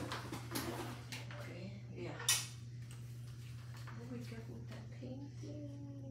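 Acrylic paint supplies being handled: a few light clicks and knocks, then one sharp clack about two seconds in, over a steady low hum.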